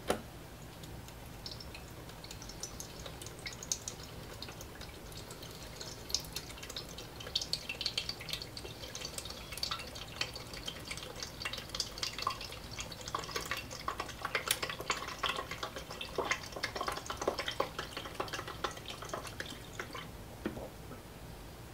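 UV ink pouring from an upturned plastic bottle into a UV printer's ink tank, with a knock at the start and then small irregular gurgles and drips that grow busier from about six seconds in.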